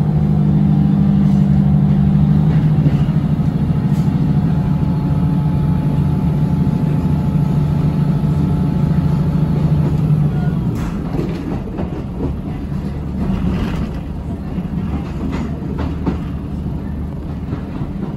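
Diesel multiple unit heard from inside the passenger saloon as it pulls away, its underfloor engine droning steadily under power. About ten seconds in the engine note drops away and the clicking of the wheels over rail joints and points comes through.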